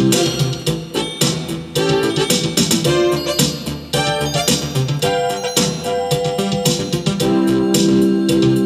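Roland RA-50 arranger playing an auto-accompaniment, with a steady drum beat and held chords. Over it runs a keyboard-voiced melody, played live from an M-Audio Oxygen 49 controller keyboard over MIDI.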